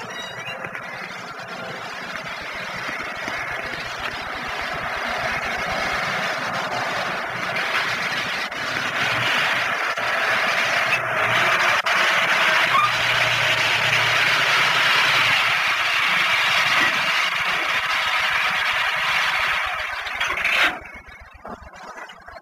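Volkswagen Beetle's air-cooled engine and road noise growing steadily louder as the car drives up, then cutting off abruptly near the end.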